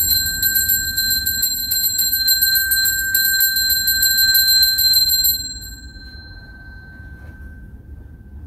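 Altar bells (sanctus bells) shaken in a rapid, continuous ring for about five seconds, then stopping and leaving a high ringing tone that slowly fades. They are rung at the elevation of the consecrated Host at Mass.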